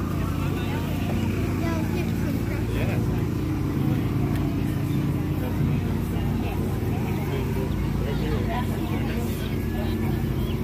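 An engine running steadily, a constant low hum, under the chatter of people nearby.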